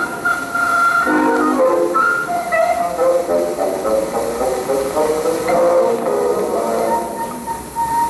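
Music from an old film's soundtrack, played back over speakers: a melody of held notes over chords, changing every half second or so and dipping slightly quieter near the end.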